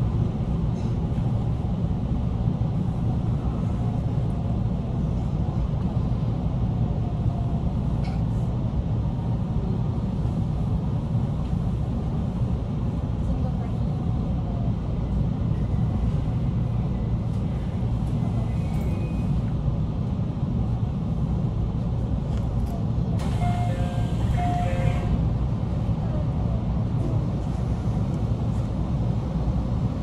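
Steady low rumble inside a JR Tōkaidō Main Line train as it comes to a stand at a station platform, with a short burst of chime-like tones about three quarters of the way through.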